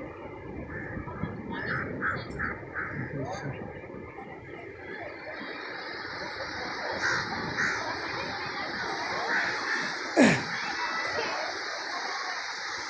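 Busy beach ambience: background voices of people on the sand, with surf washing on the shore, fuller from about six seconds in. A few short harsh calls come about two seconds in, and a sudden thump sounds near the end.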